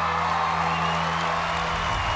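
The backing band's final chord held at the end of a ballad while a studio audience cheers, with a high held whoop through the middle.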